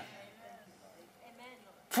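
A pause in a man's preaching: quiet room sound with faint, soft voice-like traces, then his speech starts again loudly right at the end.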